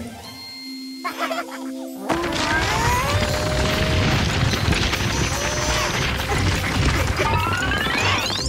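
Cartoon soundtrack: light music, turning into a loud, busy stretch of comic music and sound effects about two seconds in, with a rising whistle near the end.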